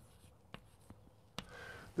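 Chalk writing on a chalkboard: faint scratching with a few sharp taps as the chalk strikes the board.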